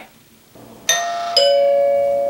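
Hampton Bay wired doorbell chime sounding its two-note ding-dong, a higher strike followed about half a second later by a lower one, both tones ringing on and slowly fading. It is the newly installed chime working when the button is pressed.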